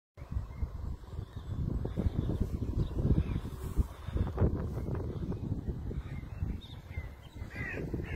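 Uneven low rumble of wind buffeting an outdoor microphone. A crow caws a few times, most clearly near the end.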